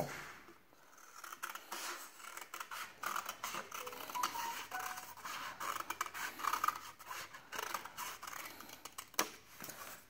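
Scissors cutting through a paper plate to remove its inner circle: a long run of short, irregular snips with the stiff paper rustling, starting about a second in.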